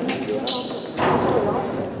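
Basketball play on a hardwood gym court: sneakers squeaking briefly a few times and the ball thumping, with players' voices in the hall.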